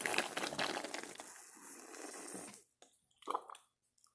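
A person sucking hard through a plastic drinking straw, a rasping slurp of air and liquid that fades over about two and a half seconds, then a short second pull. The straw is drawing mostly air, not working for the drink: the wrong straw for it.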